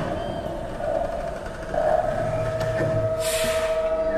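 Experimental electroacoustic noise music: a rough, grainy texture, joined just before two seconds in by a steady held tone that runs on, with a brief burst of hiss about three seconds in.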